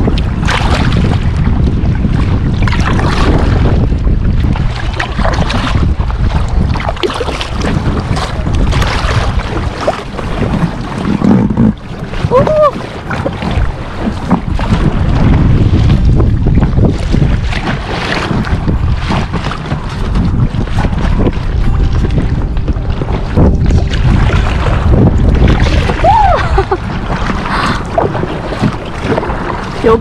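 Wind buffeting the microphone in a heavy, uneven rumble, over lake water lapping and splashing.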